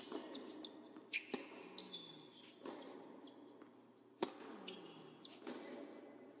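Tennis ball bounced on an indoor hard court before a serve: a handful of sharp single knocks at uneven spacing, the loudest about four seconds in.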